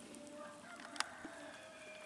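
A faint, long call from distant poultry, held on one steady pitch for about two and a half seconds. A single light click comes about a second in.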